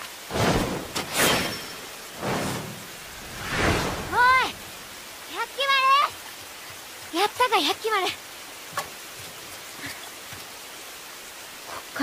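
Steady rain falling throughout. Over it come several loud breathy gasps in the first few seconds, then a handful of short cries that bend in pitch, between about four and eight seconds in.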